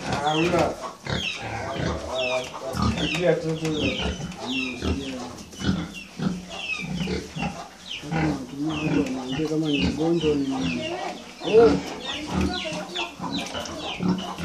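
Pigs grunting, with chickens clucking in the background in a run of short, high, falling chirps.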